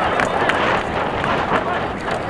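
Mountain bike ridden fast down a dirt forest trail: steady rumble of tyres on the ground and rattling of the bike, with spectators' voices shouting from the trailside.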